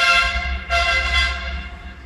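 Two horn-like pitched tones, the second starting about 0.7 s after the first and each fading away, over a low steady hum.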